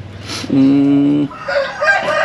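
A rooster crowing, one long call that starts about one and a half seconds in, just after a man's short "mm".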